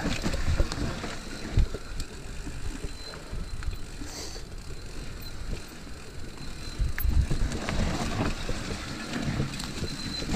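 Mountain bike running downhill over a dirt and leaf-litter trail: tyre noise with the chain and frame rattling, and sharp knocks over bumps about a second and a half in and again around seven seconds. There is wind on the microphone.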